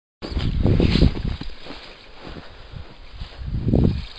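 Wind buffeting the camera's microphone outdoors: an uneven low rumble that surges through the first second, dies down, and surges again near the end.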